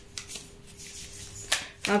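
A deck of tarot cards being shuffled by hand: soft rustles of card against card, with a sharper flick of the cards about one and a half seconds in.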